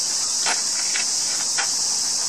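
Cicadas droning loud, steady and high-pitched without a break, with three short, fainter sounds about half a second apart.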